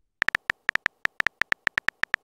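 Phone keyboard typing sound effect: a quick, uneven run of very short high electronic beeps, one per keystroke, about eight a second, all on the same pitch.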